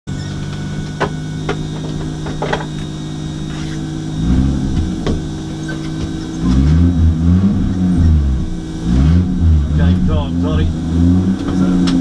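Holden VL Commodore Turbo's turbocharged 3.0-litre straight-six heard from inside the cabin, idling steadily. About four seconds in it is blipped once, and from about six seconds it is revved again and again, rising and falling roughly once a second while the car is held at the start line ready to launch.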